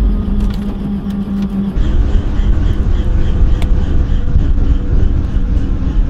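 Helicopter engine and rotor running, heard from inside the cabin as a loud, dense low rumble. A steady hum drops out about two seconds in.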